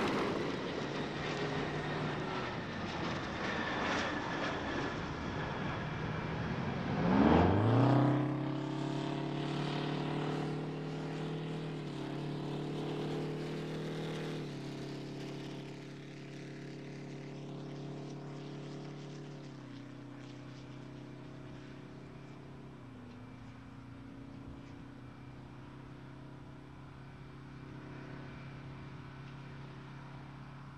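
Space Shuttle orbiter rolling out on the runway after touchdown, drag chute deployed: a steady roar, then about seven seconds in a loud motor-like drone rises sharply in pitch and holds. The drone steps down in pitch a few times as the sound slowly fades.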